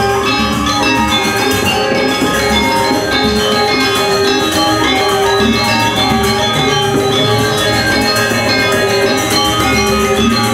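A gamelan ensemble playing: bronze metallophones ringing in a dense interlocking texture over hand drums, steady and continuous.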